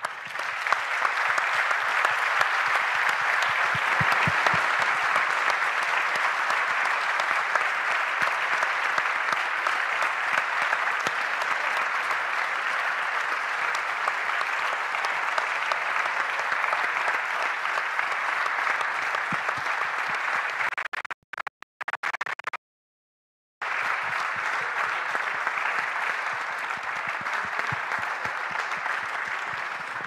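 Audience applauding steadily for the whole stretch, with the sound cutting out briefly about two-thirds of the way through.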